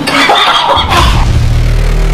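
Loud intro sound effect: a brief bright, noisy burst, then a deep, steady rumble swelling in about a second in as the logo appears.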